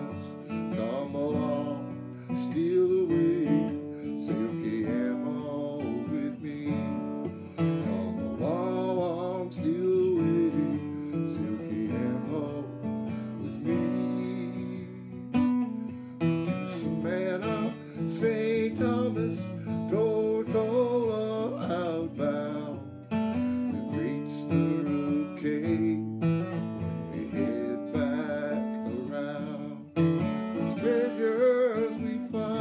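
A man singing while strumming an old Martin acoustic guitar, a solo folk-style song with chords and vocal throughout.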